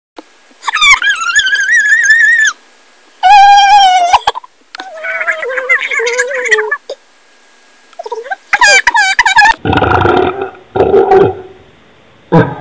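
Girls' voices altered by a laptop voice-changing effect: high, pitched-up wordless calls in about five separate bursts, the last two lower and garbled.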